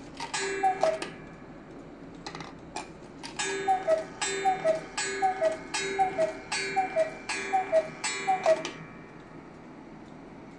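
German 8-day cuckoo clock striking. Its two-note falling cuckoo call sounds once, then after a pause repeats about nine times in a steady run, each call joined by the ring of the small bell that the moving figure pulls.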